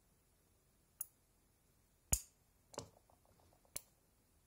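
Four sharp metallic clicks spread over about three seconds, the second the loudest, with a quick run of faint ticks between the last two: a DynaVap vaporizer's metal cap clicking as it heats in an induction heater's coil.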